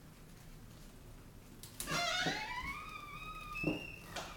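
A door hinge squeaking as the door swings: a pitched squeak starts about halfway in, rises, then holds steady for about two seconds, with a few light clicks around it.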